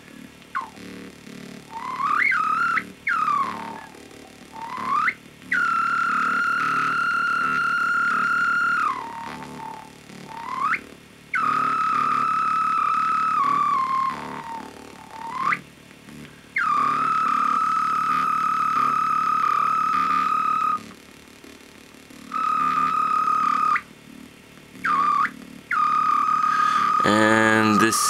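A Korg Volca Bass synth pattern run through a breadboarded one-transistor resonant low-pass filter in its high frequency range. The filter's resonance rings as a high, whistle-like tone held for several seconds at a time, gliding up and down as a knob is turned, with short quieter gaps between. Near the end a fuller, louder bass tone comes in.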